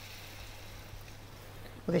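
Pan of duck pieces with onion, leek and celery sizzling faintly, just after a glass of white wine has been poured in. A steady low hum runs underneath.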